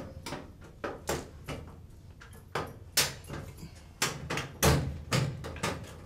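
Irregular clicks and knocks from hands working inside a sheet-metal fluorescent light fixture, handling its wiring, with the loudest knocks about halfway through.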